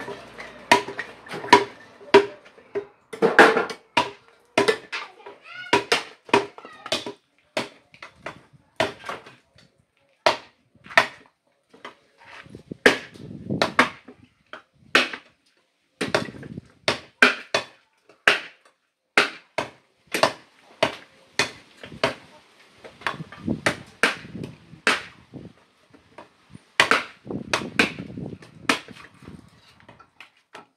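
Dry firewood logs and branches knocking and clattering as they are picked up, broken and tossed onto a pile: an irregular run of sharp wooden clacks and duller thuds, several a second at times.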